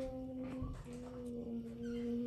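A young girl's voice holding one steady note while she tugs at her loose baby tooth with her fingers in her open mouth. The note breaks off briefly just under a second in, then is held again at a slightly lower pitch.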